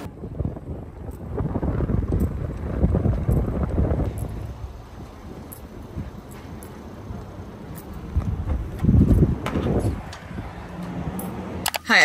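Wind buffeting the microphone outdoors, a low rumbling noise that comes in gusts. It is strongest over the first few seconds and again about nine seconds in.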